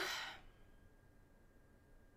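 A person's breathy exhale trailing off the end of a spoken word and fading within the first half second, then near silence: room tone with a faint steady high-pitched hum.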